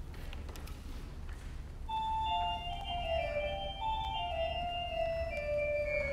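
Organ starting a slow prelude about two seconds in: held, overlapping notes, the melody stepping downward, over a low steady hum.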